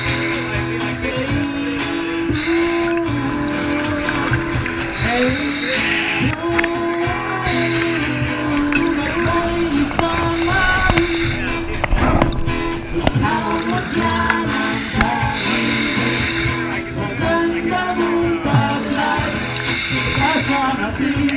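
Background music: a song with sustained bass notes and recurring high percussion.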